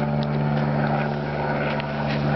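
An engine runs steadily with an even low hum. Over it is the rustle of a Christmas tree's branches as the tree is lifted down and leaned against the truck.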